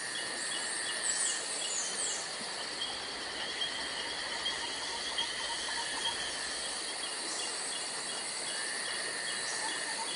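Outdoor insect chorus: steady high droning with rhythmic repeated chirping, and a few short falling whistles about one to two seconds in.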